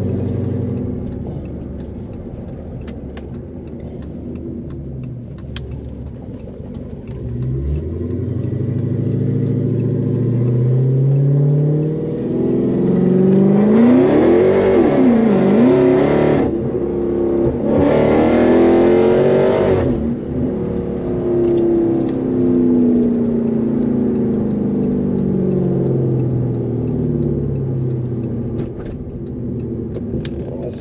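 Dodge Charger SRT Hellcat's supercharged 6.2-litre HEMI V8, heard from inside the cabin under hard acceleration. The engine note climbs steadily and is loudest for several seconds past the middle, with a short break in that loud stretch. It then falls away as the car slows.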